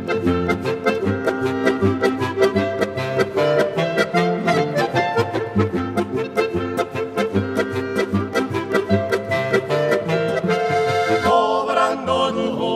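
Alpine folk instrumental music: a clarinet trio plays a lively tune over a button accordion's steady bass-and-chord beat. Near the end it gives way to men's voices singing.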